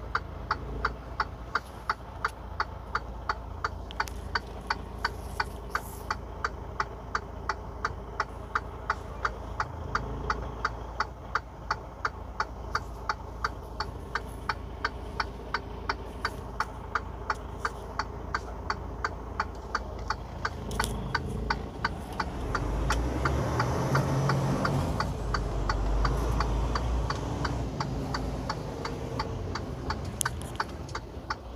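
A truck cab's turn-signal indicator ticking steadily over the low rumble of the idling engine; the engine noise swells about two-thirds of the way through as the truck starts to move.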